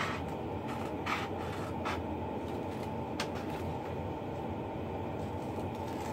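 Steady low room hum, with a few faint, short sounds of paper being handled.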